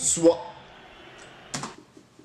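A man's voice breaks off after a single syllable. About one and a half seconds later comes one short burst of noise, then faint light ticking.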